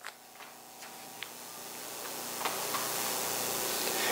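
A pause filled by room tone: a steady hiss that slowly grows louder, with a few faint light clicks from hands handling things at a wooden lectern.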